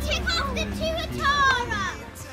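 Several young children talking and exclaiming excitedly at once, in high voices that rise and fall quickly.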